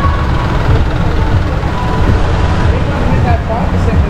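Street traffic noise: motor vehicles running by, with a steady low rumble.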